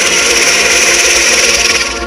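Hard psytrance with a loud rushing white-noise sweep laid over the track, which cuts off just before the end while the pulsing bass beat carries on.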